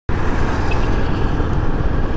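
Kawasaki Versys 650 parallel-twin motorcycle riding along a road, its engine and the wind on the rider's camera microphone making a loud, steady rumble.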